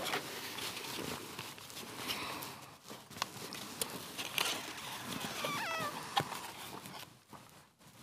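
Soft handling noises with scattered light clicks and knocks as a small wooden chest is opened and a name card drawn from it. The sound drops out almost completely for most of the last second.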